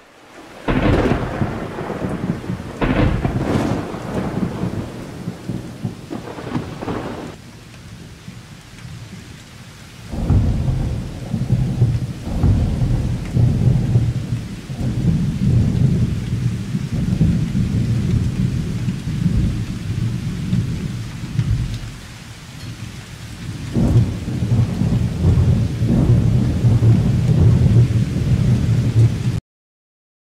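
Thunderstorm: several sharp cracks of thunder in the first seven seconds, then a long, loud, low rumble with rain from about ten seconds in, cutting off abruptly just before the end.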